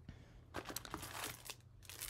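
Faint crinkling and rustling of packaging being handled, in a few short scattered bursts, as items are lifted from a subscription box.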